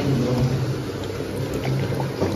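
Coconut water trickling from a hole cut in a coconut into a glass tumbler, over a steady low hum.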